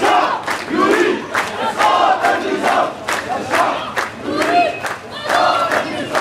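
A crowd of protesters chanting slogans together in loud, rising and falling phrases, with rhythmic clapping at about two to three claps a second.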